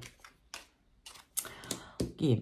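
A tarot card being picked up and turned over on a table: a few short clicks and snaps of card stock, with a brief rustle near the end.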